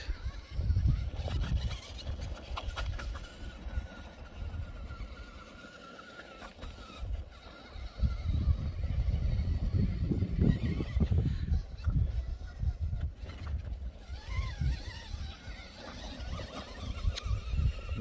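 Wind buffeting the microphone in uneven, rumbling gusts, with a faint steady whine in the first several seconds.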